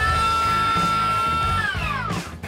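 Bosch GHO 185-LI cordless planer's brushless motor running at a steady high whine, then dropping in pitch quickly near the end as it spins down. Background music with a steady beat plays underneath.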